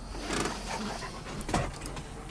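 A dog panting, with a short sharp click about a second and a half in.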